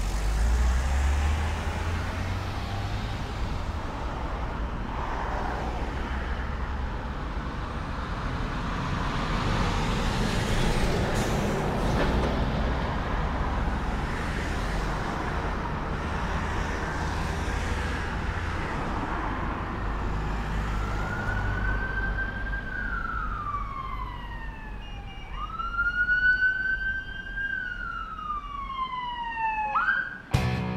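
Steady low rumble of a car engine and road noise, then, about two-thirds of the way in, an emergency vehicle's siren wailing in two long sweeps that rise, hold and fall in pitch.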